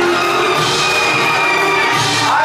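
Live band music played over a PA in a large hall, with electric guitars and keyboard, and the audience cheering over it.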